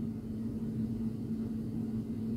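Steady low background hum with a faint, even tone running through it.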